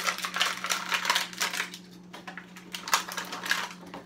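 Stiff clear plastic blister packaging crackling and clicking as it is handled and pried open by hand, in two runs of rapid clicks with a short pause between them.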